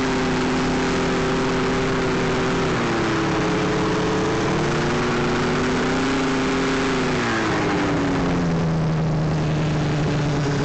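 Polaris Indy XLT snowmobile's two-stroke engine running at low revs as it rides slowly over snow, rising slightly in pitch about three seconds in and dropping back lower near the end.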